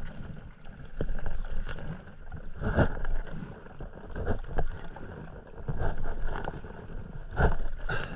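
Stand-up paddleboard paddle dipping and pulling through calm sea water, with a splash and gurgle at each stroke. The strokes come in a loose rhythm, about five of them.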